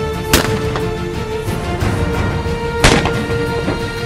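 Two shots from a Caesar Guerini Invictus I Sporting 12-gauge over-and-under shotgun, about two and a half seconds apart, the second louder, over background music.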